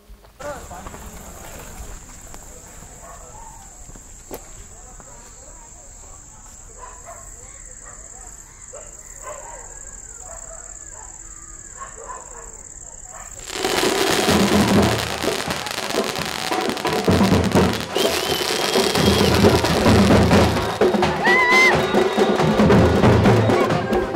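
A steady high-pitched whine over quiet night ambience; then, about 13 seconds in, loud street drumming suddenly starts: a band beating large drums with sticks in a fast rhythm, with a crowd around it.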